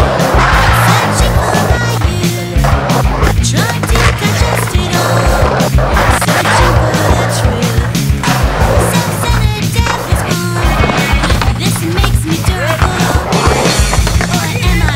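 Skateboard wheels rolling and carving across concrete in a bowl and full pipe, heard over music with a steady bass line and beat.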